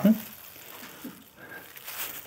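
Quiet lull: faint room noise with a little soft rustling, after the tail of a man's word at the very start.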